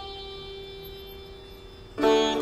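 Background music: one plucked string note, with its overtones, slowly dying away.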